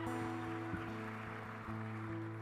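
Acoustic guitars playing the soft opening chords of a live ballad, the chords ringing on and changing near the end.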